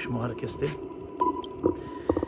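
A man's voice in brief fragments over a steady high tone that runs throughout, with a few soft clicks and a short hiss near the end.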